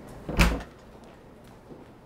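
A small hinged cabinet compartment door, one of a wall of lockers, opened with a single sharp clack about half a second in.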